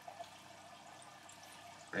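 Quiet room tone: a steady faint hiss, with a couple of small soft clicks just after the start.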